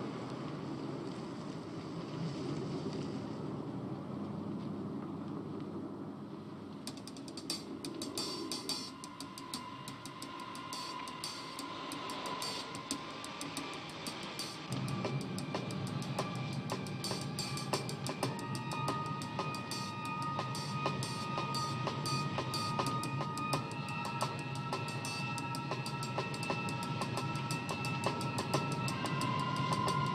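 A low car-driving rumble for the first several seconds. Then film-score music fades in with a drum kit's cymbal and snare ticks, sustained instrumental notes from about nine seconds in, and a bass line that fills it out about halfway through.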